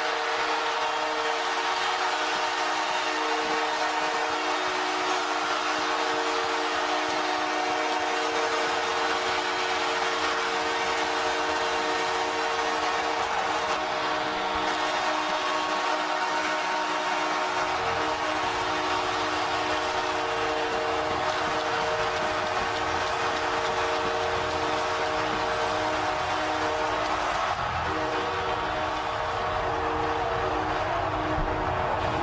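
Arena goal horn sounding continuously, a steady multi-tone blast signalling a home-team goal, over a loud, sustained crowd cheer. A deeper rumble joins a little past halfway.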